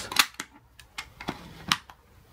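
Plastic clicks and clacks of an 18650 lithium-ion cell being pushed into a cheap charger's slot: a handful of sharp, separate clicks over two seconds, the loudest near the start and near the end.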